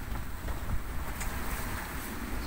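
Strong wind buffeting the microphone in a sailboat's cockpit at sea: a low, steady rumble.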